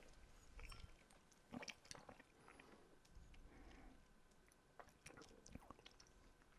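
Near silence with faint mouth sounds close to the microphones: small clicks and lip noises as a sip of whisky is held and tasted, a few brief ones scattered through.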